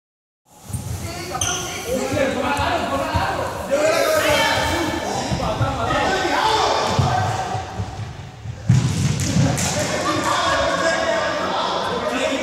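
A group's voices and calls echoing in a large sports hall, with repeated dull thuds on the floor and a sudden loud thump about nine seconds in.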